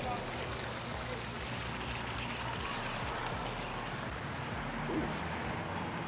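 Steady outdoor background noise with a low hum, and faint voices near the end.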